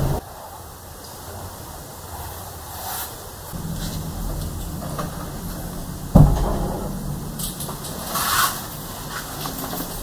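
A low steady drone, with a single loud thump about six seconds in, like a wooden door banging, and some brief rustling noises after it.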